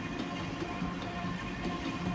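Stand mixer running at its slowest stir speed, a steady motor hum as the paddle turns through thick fruitcake batter.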